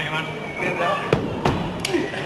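Two sharp thuds on the wrestling ring's canvas, about a second in and a third of a second apart, among the voices of the audience in the hall.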